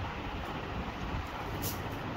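Steady low background rumble, with a brief soft hiss about one and a half seconds in.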